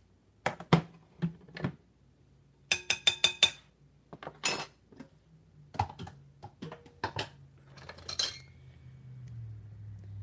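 Metal ladle knocking and scraping against a stainless saucepan and a mixing bowl while sauce is spooned out. About three seconds in comes a quick run of about five ringing metal taps.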